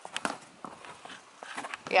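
A few quiet, scattered taps and scuffs on concrete, with some sharper clicks in the first half second.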